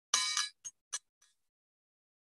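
A desk call bell struck three or four times in quick succession. The first ding rings on for a moment; the next ones are shorter and cut off. This is the run of dings that signals a speaker has gone 15 seconds over time.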